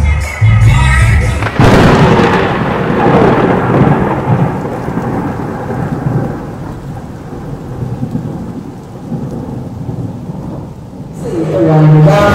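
Music cut off by a sudden loud crash like a thunderclap about a second and a half in, which rumbles and slowly dies away over the next nine seconds.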